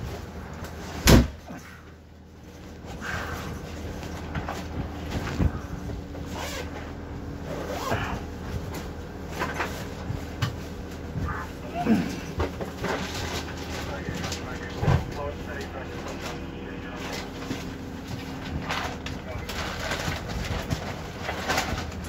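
Steady low hum inside an ambulance's patient compartment, with a sharp click about a second in, scattered knocks and a few faint voice-like sounds.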